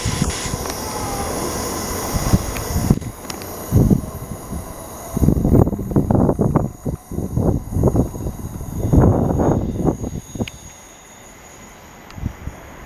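Gatwick Express Class 387 electric multiple unit pulling out and running away from the platform: a steady high whine and rail noise at first, then loud irregular low rumbles and thumps in the middle, fading down near the end.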